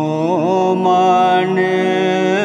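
Background music: a voice chanting a Buddhist-style mantra in long held notes with wavering turns, over steady sustained backing tones.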